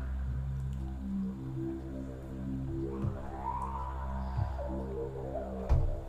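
Poltergeist software synthesizer holding a low, harmonic-rich note while its filter cutoff is swept by hand. The tone darkens at first, then brightens and dulls again in one slow sweep through the middle. The note stops just before the end.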